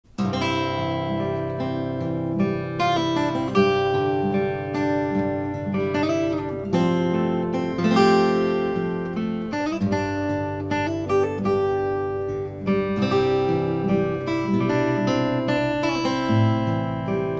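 Solo steel-string acoustic guitar played fingerstyle: picked melody notes ringing over held low bass notes.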